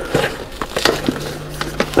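Cardboard shipping box being forced open by hand, its packing tape and flaps tearing with scattered crackles and knocks.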